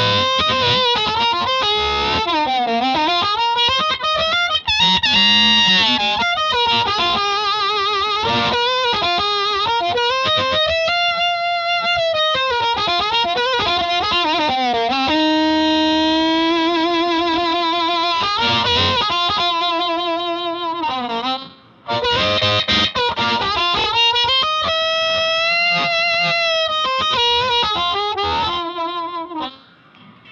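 Harmonica played through a Hohner Harp Blaster HB52 microphone and a Magnatone combo amplifier: a single melodic line of long held notes, bends and wavering vibrato, with a short break about three-quarters of the way through.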